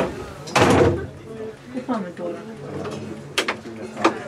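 People talking in the background, with a brief loud rush of noise about half a second in and a sharp click near the end.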